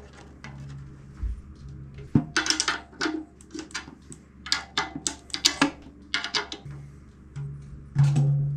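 A tom being retuned: a run of light taps and clicks from fingers on its resonant head and the drum key at the tension rods, as the resonant head is tightened to raise the drum's pitch. A low ring from the drum comes and goes near the start and again near the end.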